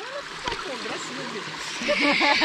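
Shallow forest stream running steadily over rocks, a continuous water hiss.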